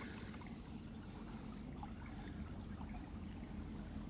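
Faint, steady outdoor background noise: a low, even rumble with no distinct events.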